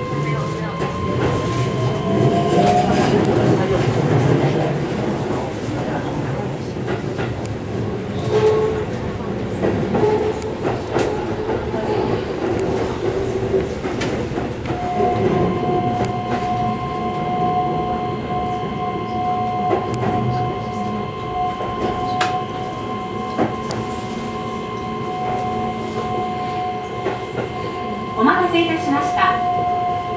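Keihan electric train running, heard from the cab end. Its motor whine rises in pitch over the first few seconds as it pulls away, then holds steady tones, with rail clicks throughout.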